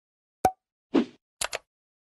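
Short percussive sounds against dead silence: a sharp click about half a second in, then a short dull hit followed by two quick high ticks.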